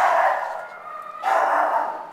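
Dogs barking in a shelter kennel, one spell at the start that fades out and another about a second and a quarter in.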